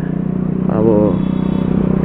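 Scooter engine running steadily at low road speed, with a brief bit of speech about halfway through.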